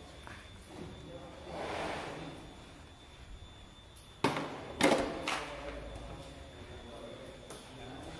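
Handling noise: a brief scraping swell, then three sharp knocks about half a second apart, with a short voice among them.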